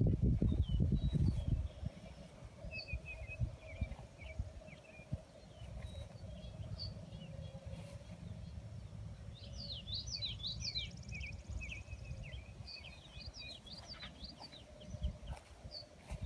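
Songbirds chirping and calling, with a busy flurry of chirps about two-thirds of the way through. Low wind rumble on the microphone is loudest in the first second or two, and there is a faint steady hum.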